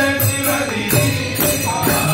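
A man's voice singing a devotional Hindu bhajan into a microphone in a chant-like melody, with a few percussion strokes.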